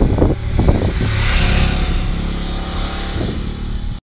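BMW F850GS motorcycle with its parallel-twin engine coming along the road and passing close by. A rushing sound swells to a peak about a second and a half in, with the engine's steady hum beneath, and the sound cuts off abruptly at the end.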